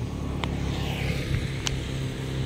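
A motor vehicle's engine idling steadily, with two short ticks, one about half a second in and one near the end.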